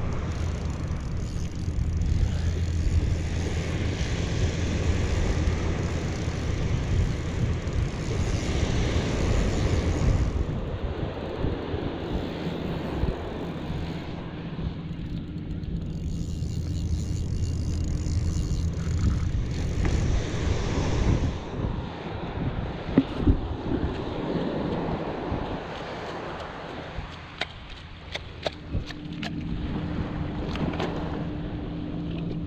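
Wind rumbling on the microphone and surf washing in as a spinning reel is cranked against a hooked fish. A few sharp clicks near the end.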